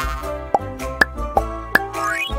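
Light children's background music with four short cartoon plop sound effects, about one every half second.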